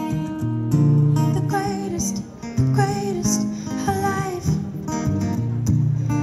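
Acoustic guitar strummed, with a woman singing a melody over it into a microphone.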